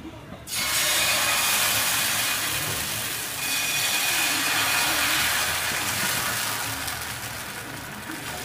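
Thin batter sizzling on a hot cast-iron pan, starting suddenly about half a second in as it is poured, then holding steady as the steel ladle spreads it.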